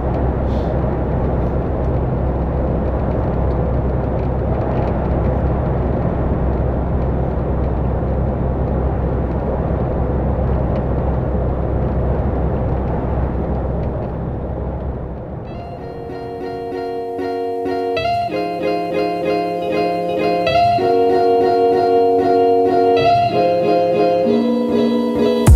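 Steady road and engine noise inside the cab of a MAN TGX semi-truck driving at motorway speed, fading out about fifteen seconds in. Background music of held chords then takes over, the chords changing every couple of seconds.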